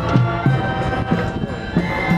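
High school marching band playing live outdoors: brass holding chords over a steady low beat of about three pulses a second.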